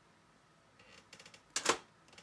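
Light clicking and tapping of a plastic makeup palette being handled, with one sharper click about one and a half seconds in.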